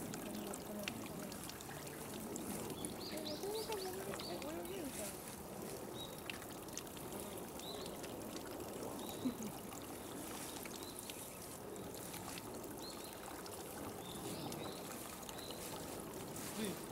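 Water pouring steadily into a stone hot-spring bath, a continuous splashing rush, with faint voices of people in the background.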